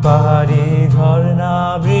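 A man singing a drawn-out, wavering line of a Bengali song, with his acoustic guitar accompanying.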